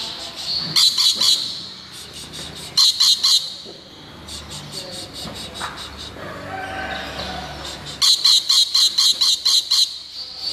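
Rainbow lorikeet calling in bursts of rapid, harsh chattering notes: a short burst near the start, another about three seconds in, and a longer run over the last two seconds, with softer calls in between.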